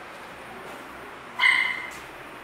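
A dog yelps once, a single short high-pitched cry about one and a half seconds in that fades within half a second, over a low steady room background.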